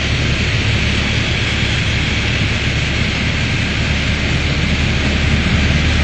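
Piper Warrior's four-cylinder Lycoming engine and propeller droning steadily inside the cabin, mixed with airflow noise, with power reduced to slow the aircraft.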